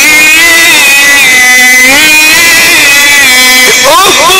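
A man reciting the Quran in drawn-out Egyptian tajweed style, holding one long melismatic note on a vowel. Its pitch steps up about halfway through and sweeps sharply upward near the end.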